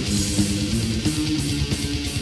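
Death/thrash metal song: a distorted electric guitar riff over bass guitar and busy drumming.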